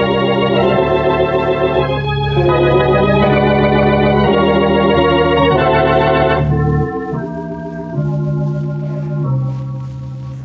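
Organ music bridge marking a scene change in an old-time radio drama: sustained chords that change every second or two, loud at first and quieter from about two-thirds of the way through.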